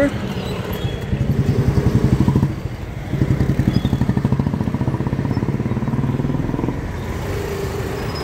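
Small motorcycle and scooter engines running close by in slow street traffic. Their fast, even beat swells twice, about a second in and again from about three seconds in, then eases off.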